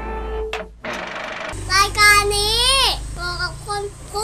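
Television rating-card ident: a short music sting and a swish, then a high child-like voice sings or speaks one long sliding syllable followed by a few short ones.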